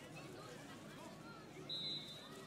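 Faint distant voices from the crowd, then near the end one short, steady blast of a referee's whistle, the signal that the free kick may be taken.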